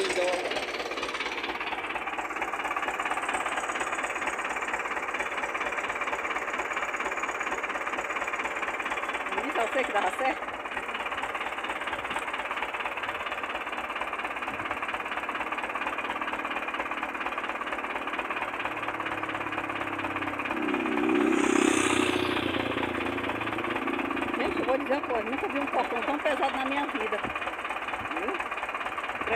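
Small farm tractor's engine running with a steady knocking clatter. It grows louder for a moment about 21 seconds in.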